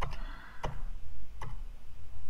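Sharp keystrokes on a computer keyboard, three clicks about two-thirds of a second apart, as an SQL query is run again and again, over a low steady hum.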